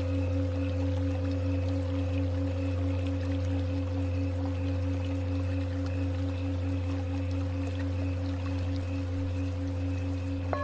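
Tibetan singing bowl tones held over a low steady drone, one tone beating in a quick even pulse.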